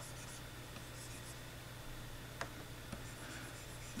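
Faint scratching of a pen stylus drawing strokes across a graphics tablet, with a couple of light clicks about two and a half and three seconds in.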